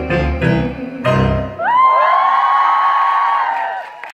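A live band's last chords, struck with heavy bass, end a song. About a second and a half in, the audience breaks into high-pitched screaming and cheering that fades near the end.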